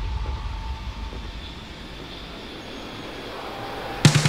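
Quiet breakdown in a deathstep electronic track: a beatless, rumbling noise texture that fades down over the first two seconds, then swells slightly toward the end.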